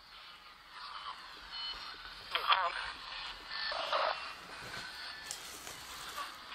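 A few short, garbled voice-like fragments from a small speaker, about one, two and a half and four seconds in, over a faint radio-like hiss.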